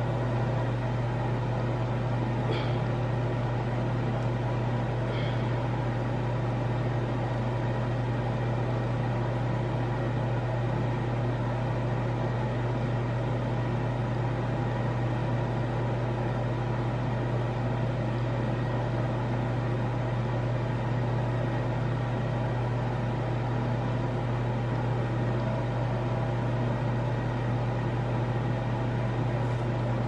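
A steady, unchanging low mechanical hum, like a small fan or electric motor running continuously, with a couple of faint light ticks in the first few seconds.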